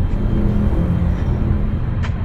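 A loud, steady low rumble, with a faint hum on top.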